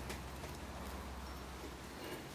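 Quiet room tone with a steady low hum and faint hiss, no distinct handling sounds.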